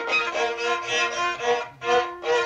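A violin played in a run of short bowed notes, with a brief break near the end. It comes from an old home cassette demo recording, so the top end is dull.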